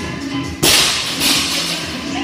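A 95 lb barbell dropped from overhead onto the gym floor: a sudden loud bang about half a second in, then a second, smaller impact as it bounces, over background music.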